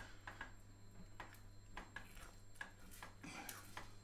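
Faint, irregular scrapes and taps of a spatula stirring a thick cheese sauce in a stainless steel saucepan, over a low steady hum.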